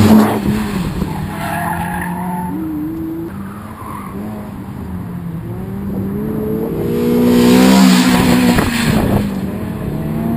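Autocross cars driven hard through a cone course. One car passes close by at the start with a loud rush of engine and tyre noise. Engine pitch then rises and falls as cars accelerate and brake, with tyres scrubbing and squealing through the turns, loudest again about seven to eight seconds in.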